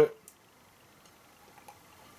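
Near silence with a couple of faint, soft clicks and mouth sounds as a man sips lager from a glass.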